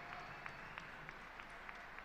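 Faint, scattered clapping from a large audience, a few separate claps a second over a low background hum of the crowd.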